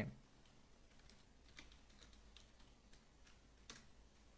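Faint computer keyboard typing: a run of separate keystrokes, with one louder click near the end.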